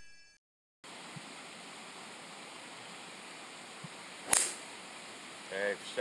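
A single sharp crack of a golf club striking the ball on a tee shot, about four seconds in, over steady faint outdoor ambience. The club is not a driver.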